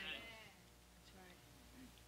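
Near silence: a faint wavering voice fades out in the first half-second, then only faint room tone.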